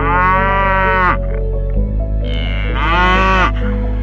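Cattle mooing: two long moos, the first about a second long right at the start and the second around three seconds in. The pitch of each falls away at its end.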